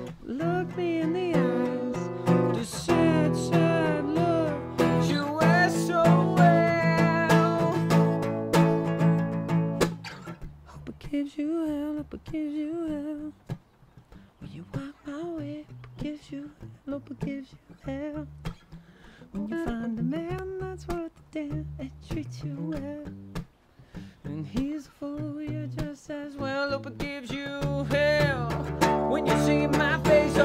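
Acoustic guitar with a man singing. The guitar is strummed fully at first. About ten seconds in it drops to a quieter stretch of sparse guitar under a wavering vocal line, and full strumming returns near the end.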